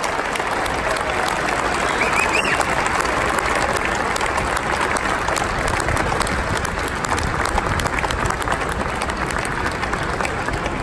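Large crowd applauding steadily, with a brief whoop from the crowd about two seconds in.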